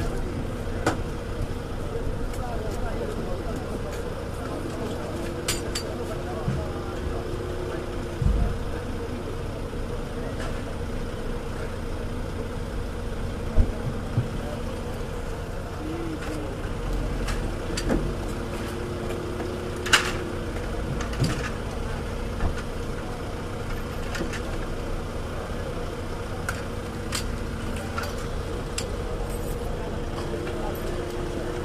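A vehicle engine idling with a steady hum, under background voices and scattered clicks and knocks.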